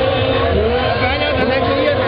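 Loud, dense din of voices over music, with a steady held drone tone and a continuous low pulse underneath.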